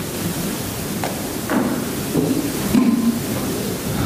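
Steady hiss of room noise in a large lecture hall, with a faint, indistinct murmur of voices from the audience at times.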